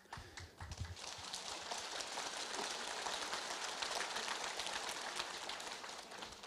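Faint audience applause: many hands clapping, building over the first second and fading out near the end.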